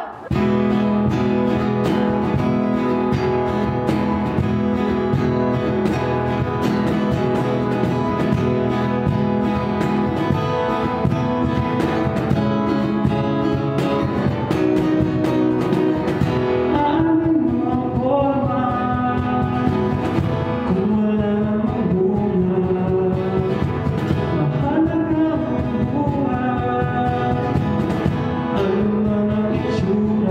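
Small acoustic band playing: acoustic guitar with a steady cajón beat, and a man's lead vocal that comes in about halfway through.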